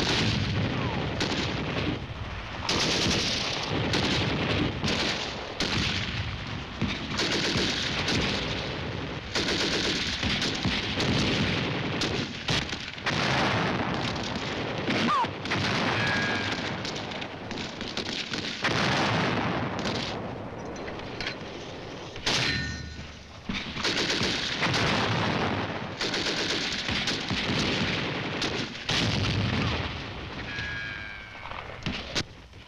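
Sustained battlefield gunfire: rifles and automatic weapons firing in dense, overlapping volleys and bursts. The firing lets up briefly about three-quarters of the way through, then resumes.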